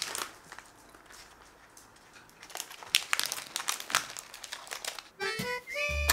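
A treat bag crinkling and rustling in irregular crackles, handled close by. Background music with a melody of held notes starts about five seconds in.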